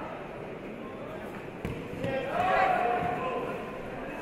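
A judoka thrown down onto the tatami: one heavy thud about halfway through, followed at once by voices calling out in the hall.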